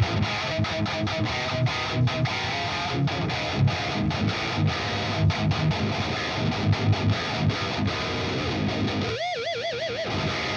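High-gain distorted seven-string electric guitar in drop A-flat tuning, played through the Fortin Nameless Suite amp-simulator plugin: a fast, low riff with many sharp stops. About nine seconds in it ends on a held note with wide vibrato.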